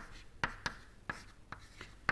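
Chalk writing on a blackboard: a quick series of short sharp taps and scrapes as chalk strokes are drawn.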